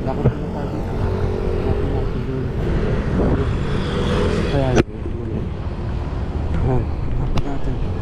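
Road vehicle engine running steadily while driving, with road noise. The sound breaks off abruptly just before five seconds in, then resumes.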